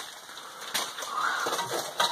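Scuffing and rustling of clothes and bodies against rock as people crawl through a tight cave passage, with a few light knocks.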